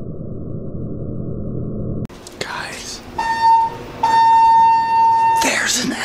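A low droning rumble cuts off suddenly about two seconds in. Then a high, steady electronic beep sounds twice, a short one and then one lasting about a second and a half. Near the end a man shouts.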